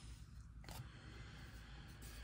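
Near silence with faint handling of a stack of glossy trading cards, the cards sliding against one another as they are shuffled from back to front, with one soft click about two-thirds of a second in.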